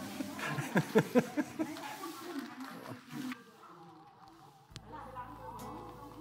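Indistinct voices of people talking in the background, fading after about three seconds; near five seconds the background hum changes abruptly.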